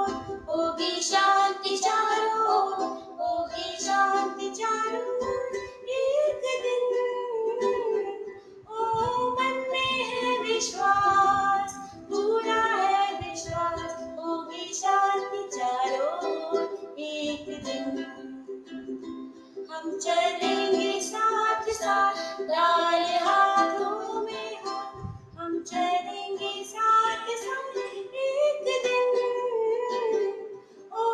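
Ukulele strummed as accompaniment to a song, sung by a boy and a woman together.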